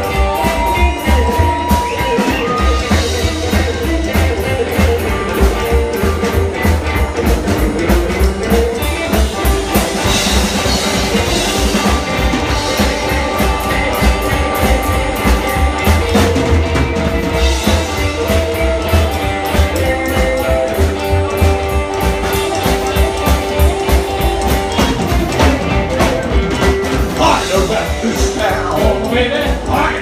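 Live rockabilly band playing an instrumental passage on upright double bass, hollow-body electric guitar and drum kit, with a pulsing bass-and-drum beat under a guitar melody.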